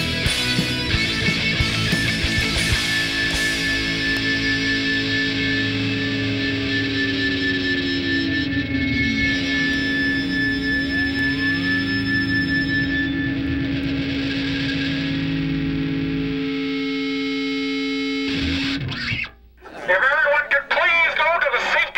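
Distorted electric guitar music run through effects: a busy riff, then long held notes whose pitch slides down and back up around the middle. It ends on a held chord that cuts off abruptly shortly before the end.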